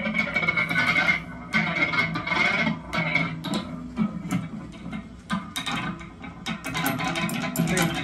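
Homemade stump stick, a pole instrument with a spring and metal rod amplified through effects pedals, being plucked and struck: twangy, clanking electric tones with many sharp clicks, over a steady high tone that stops about three seconds in.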